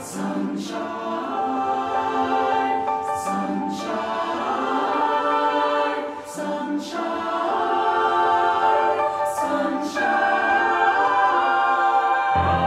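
Mixed choir in five parts singing long, sustained chords on the word "sunshine" about four times, roughly three seconds apart, each marked by the hiss of its "s" and "sh". Soft piano accompaniment plays repeated chords underneath.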